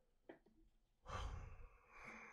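A man sighs, one breathy exhale about a second in that lasts just under a second.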